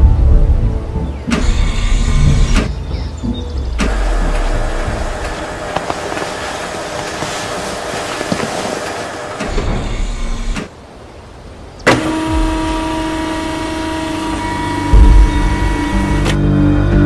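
Soundtrack music mixed with mechanical sound effects: electric motor and servo whirs, like a power window, for a robotic tracked vehicle moving its panels. The sound changes abruptly several times, with a brief quieter gap about eleven seconds in.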